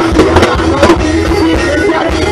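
A live gospel reggae band playing through a PA system, with a steady bass line and sharp drum hits in the first second.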